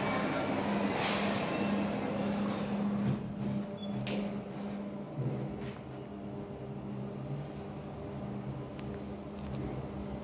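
KONE passenger elevator car travelling up, heard from inside the car: a steady low hum. Hall noise through the glass doors is louder for the first three seconds or so, then drops away.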